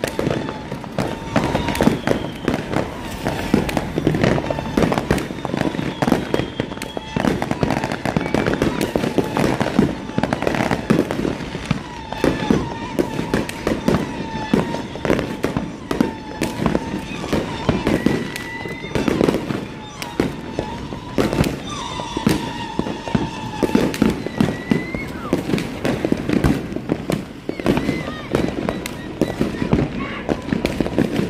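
Many neighbourhood fireworks going off at once: aerial shells and firecrackers popping and banging in rapid succession, with no let-up.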